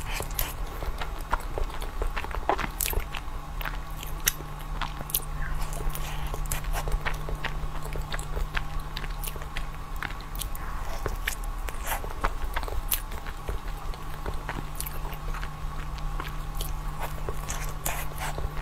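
Close-miked eating sounds: bites into a soft purple pastry filled with cream, and wet chewing with many small sharp mouth clicks throughout.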